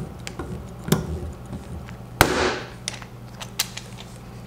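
A paintless dent repair mini lifter pulling on a hot-glued tab on a car door: light clicks from the tool, then a sharp pop about two seconds in as the pull lets go, with a short rattling tail.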